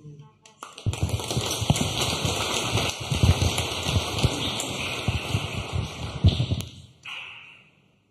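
Audience applauding, starting about a second in and dying away shortly before the end.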